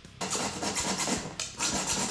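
Hacksaw cutting through a plastic sheet: two long rasping strokes, the second starting about one and a half seconds in.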